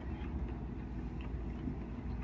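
Room tone in a pause between speech: a steady low hum with faint background noise.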